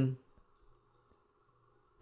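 Two faint computer mouse clicks within the first second, over quiet room tone.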